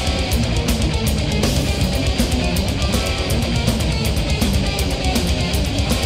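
Heavy metal recording: distorted electric guitar riffing over fast, driving drums with rapid cymbal hits.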